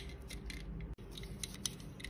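Small metal jewellery charms clicking and clinking against a clear plastic compartment organizer as they are picked out by hand: a few light, sharp clicks, the sharpest about one and a half seconds in.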